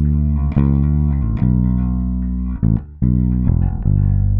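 Solo bass guitar track played back, a line of sustained low notes changing pitch every half second to a second or so, with a brief gap just before three seconds in. It is the bass as recorded, before any spectral shaping.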